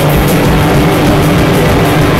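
Live rock band playing loud and without a break: electric guitar, bass guitar and drum kit together.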